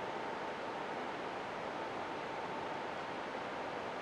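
Steady hiss with a faint, steady high tone running under it: the background noise of a studio or broadcast with no one speaking.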